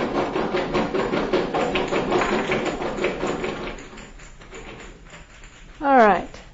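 Lightweight model balls rattling rapidly against each other and their container as it is agitated to add energy. The rattle is dense for about four seconds, then thins out and dies away.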